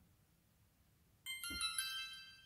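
Xiaomi Yi 4K+ action camera's power-on chime: a few quick high ringing notes start about a second in, one after another, then fade away. It is the sign that the camera has switched on.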